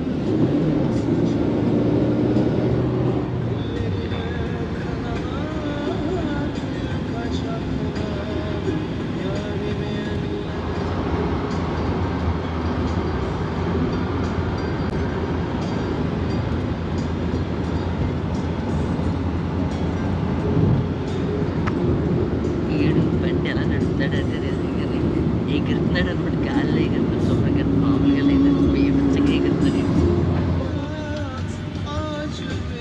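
Steady engine and road noise inside a moving taxi's cabin, with music and voices faintly over it.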